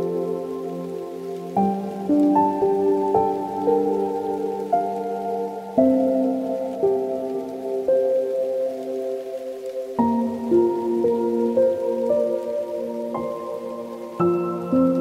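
Slow, soft piano music: held chords with single melody notes over them, each note struck and left to fade, the harmony changing about every four seconds.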